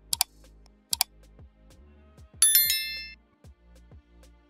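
Two mouse clicks, then a bright bell chime that rings out and fades: a subscribe-and-notification-bell sound effect. Quiet background music with a steady beat runs underneath.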